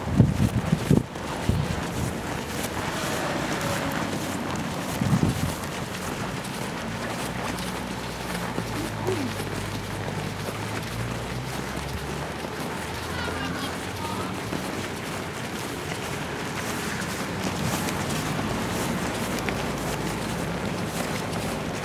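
Outdoor street noise at night, with wind buffeting the microphone in low bumps during the first second and again around five seconds in. After that comes a steady background noise with a low hum through the middle.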